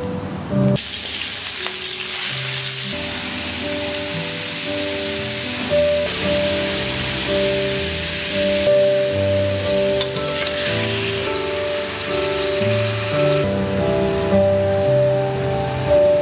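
Food sizzling in hot oil in a steel wok as vegetables are stir-fried. The sizzle comes up strongly about a second in and eases near the end, over background music with a steady melody and bass line.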